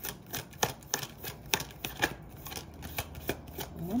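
Tarot cards being shuffled and handled on a wooden table: a run of light, irregular card snaps and clicks.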